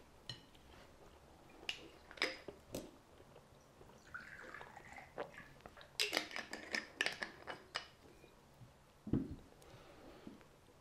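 Faint sounds at a table: a man chewing a bite of food and a few small clicks, then vodka poured into a shot glass. About six seconds in comes a cluster of clicks and clinks as the glass vodka bottle's screw cap is turned.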